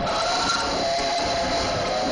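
Mass choir singing an old-time gospel chorus, with long held notes, recorded on a cell phone's microphone.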